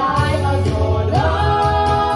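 Ensemble of stage performers singing together over loud amplified music with a steady beat and heavy bass. About a second in, the voices slide up into a long held chord.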